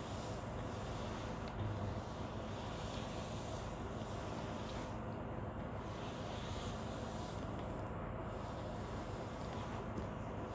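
Cashew nuts frying in shallow oil in a cast-iron kadai: a soft, steady sizzle, with one brief low thud a little under two seconds in.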